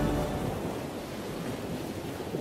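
Sea ambience of waves washing with wind, fading gradually; the last notes of a music track die away in the first half second.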